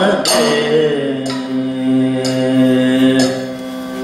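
Kathakali vocal music: a male singer holds a long, slowly moving chant-like note, while a metal percussion instrument is struck about once a second to keep time, each strike ringing on.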